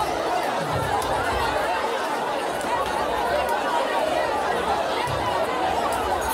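A church congregation with many voices calling out at once, making a dense, steady babble of overlapping loud voices with no single speaker standing out.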